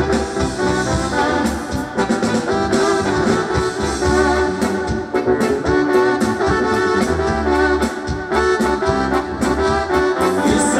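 Live band playing an instrumental passage of dance music with a steady drum beat, electric guitars and keyboards, loud and continuous.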